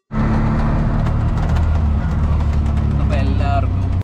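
Auto-rickshaw engine running steadily as the three-wheeler drives, heard from inside the open cabin as a loud low drone with light rattling. A brief voice cuts in about three seconds in.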